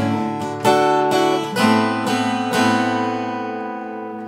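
Acoustic steel-string guitar playing chords, with about six strokes over the first two and a half seconds. The last chord is left to ring out and fade slowly.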